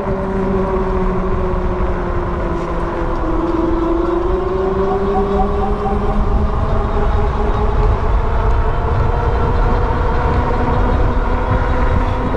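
E-bike's 500 W hub motor whining steadily under power while riding on asphalt, its pitch sinking slightly a few seconds in and then climbing back. Under it, a low rumble of wind on the camera microphone and fat tyres on the road.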